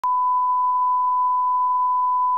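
Steady 1 kHz line-up test tone: one pure, unbroken beep at a constant level, starting abruptly.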